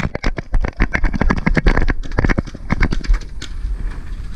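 Rapid, irregular clatter of paintball gear during play: many sharp knocks and pops a second, over a low rumble of wind and handling on the camera, thinning out near the end.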